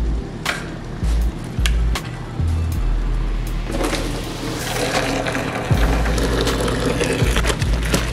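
Background music with a steady beat. About midway through, hot water from an electric kettle is poured into a plastic spin-mop bucket, a rushing splash that lasts a couple of seconds.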